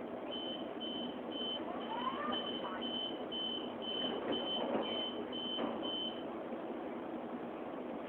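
Passenger train's door warning beeps: about a dozen evenly spaced high beeps, roughly two a second, stopping about six seconds in, over the steady rumble of the carriage.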